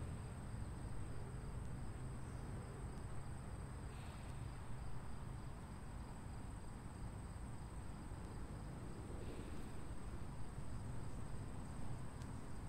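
Steady, high-pitched insect trill over a low background rumble. Two faint breaths out through the mouth come about four and nine seconds in.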